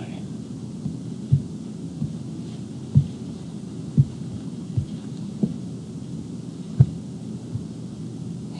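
Steady room noise with about six soft, low thumps spaced unevenly, the last one the loudest.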